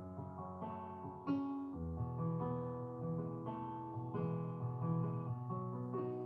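Electronic keyboard playing arpeggiated chords, the notes of each chord sounded one after another from the bottom up and left ringing together.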